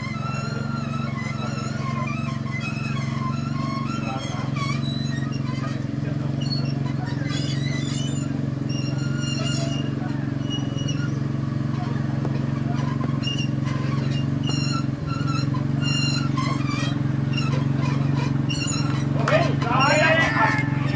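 Open-air cricket ground ambience: a steady low hum under distant voices and scattered short high chirps. Shortly before the end, a single sharp crack of a cricket bat hitting the ball.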